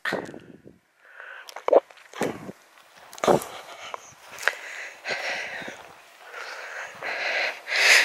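A person breathing close to the microphone, with uneven breathy exhalations and sniffs, and a few short knocks.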